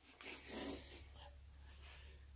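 Near silence, broken about half a second in by a man's short, faint breath.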